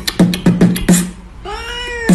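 A cat meows once, a long call that rises and falls in pitch, in the second half. It is set against a beatbox rhythm of sharp clicks and short low thumps, about five in the first second.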